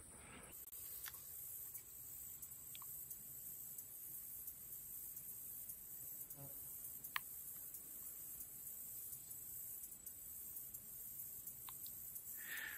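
Faint, steady high-pitched chorus of insects, with a few soft clicks scattered through.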